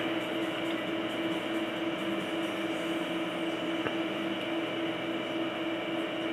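Steady hum of computers running as they boot, with a constant low tone, the fans and spinning drive of the netbooks. A single faint click comes about four seconds in.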